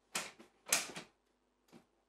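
A wooden interior door's handle and latch clicking as the door is opened: two short rattling clacks in the first second, then a faint tick.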